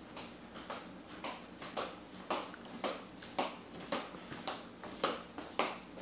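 A faint series of short, sharp clicks, about two a second and slightly uneven.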